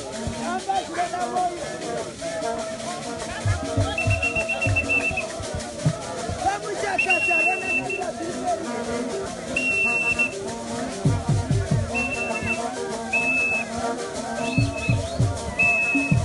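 A group singing together in chorus, with a whistle blown in short high blasts about seven times from about four seconds in, the first about a second long and the later ones shorter and more regular. Low thumps sound under the singing, in clusters in the second half.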